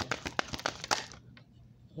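A deck of tarot cards being shuffled by hand: a rapid run of sharp card flicks that stops a little over a second in.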